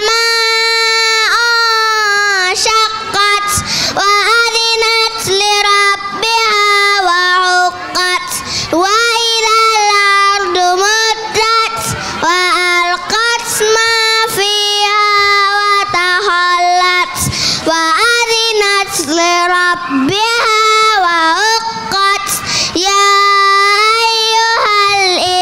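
A young boy's solo voice reciting memorized Qur'an verses in a melodic chant, amplified through a microphone. The phrases have long held notes and short breaks between them.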